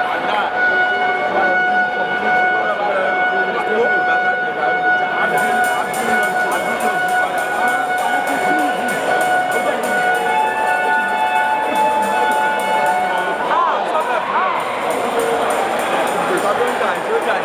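Crowd of voices at a boxing fight night over music: a held, pitched tone sounds until about thirteen seconds in, and a fast, even ticking joins about five seconds in.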